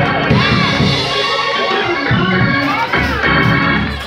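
Organ playing held chords, with a voice rising and falling over it in short phrases.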